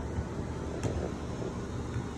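Steady low background rumble with no speech, and a faint click a little under a second in.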